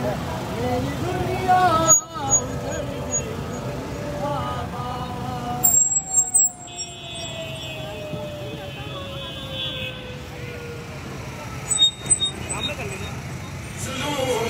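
Street procession noise: many motorcycle and vehicle engines running in a dense crowd, with men's voices calling out. Through the middle a long tone slides slowly down in pitch.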